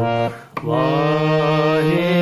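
Harmonium playing sustained reed notes over a low held drone, with a sung line gliding in the same pitch; the sound dips out briefly about half a second in, then the notes resume.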